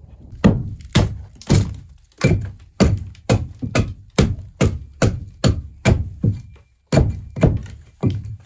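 A hatchet chopping into the wood of an old railway sleeper, trimming out a window opening. Sharp blows land about twice a second, with a short pause near the end.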